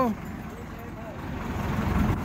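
A small truck driving past close by, its engine and tyres growing louder over the second half.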